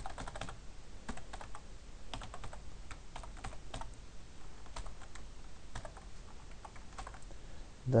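Typing on a computer keyboard: irregular runs of key clicks as a line of code is entered, with short pauses between bursts.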